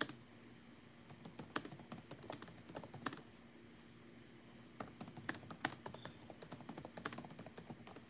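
Typing on a keyboard: irregular runs of light key clicks in two spells, with a pause of about a second and a half around the middle.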